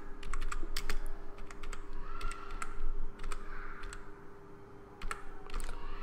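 Typing on a computer keyboard: a quick, irregular run of key clicks as a word is typed, easing off briefly about four seconds in.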